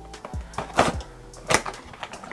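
Cardboard product box being opened and handled by hand: two short scraping rustles, about a second in and again about half a second later, over faint background music.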